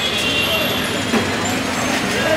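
Busy street noise: background voices of passers-by over traffic, with a sharp click about a second in.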